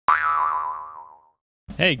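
Cartoon 'boing' sound effect: a sudden springy twang whose pitch jumps up and wobbles, fading away over about a second.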